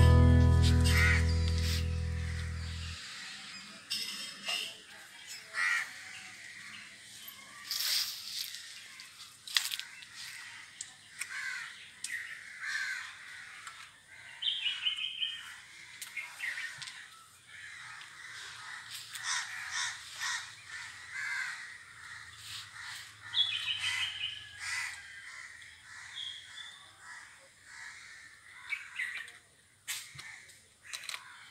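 Acoustic guitar music fading out over the first few seconds, then outdoor ambience with birds calling now and then. Scattered short clicks and rustles run through it, from hands working soil into a cut plastic bottle.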